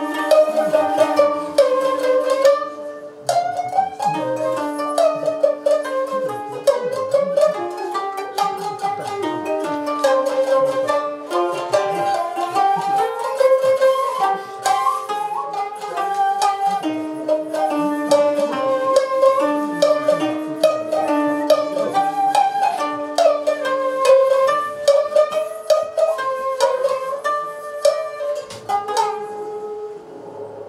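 Koto and shamisen playing together in a traditional Japanese sankyoku piece: quick plucked and struck notes over a held, wavering melody line.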